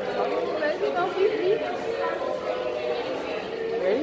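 Background chatter of several people's voices in a busy restaurant.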